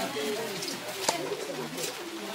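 Low bird calls over faint voices, with one sharp click about a second in.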